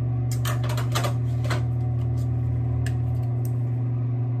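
Short, sharp clicks and taps of plastic makeup cases and a brush being handled, about six of them spread irregularly over the few seconds, over a steady low hum.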